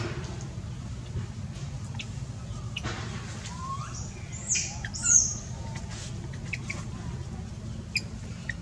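Newborn pigtail macaque giving two short, high-pitched squeals, each falling in pitch, about halfway through, while clutched tightly against its mother.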